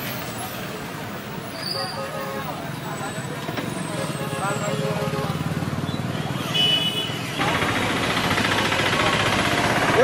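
Roadside traffic noise with indistinct voices in the background, becoming louder and denser about seven seconds in.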